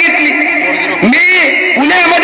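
A man's voice, raised and strained, speaking into a microphone over a public address system, with a steady high ring running underneath.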